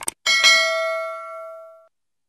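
Mouse clicks from a subscribe-button animation sound effect, followed by a bright notification-bell ding that rings and fades out over about a second and a half.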